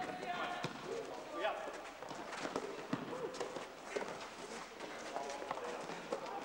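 Basketball game on an indoor court: players' voices calling out over running footsteps and the thuds of the ball being dribbled on the floor.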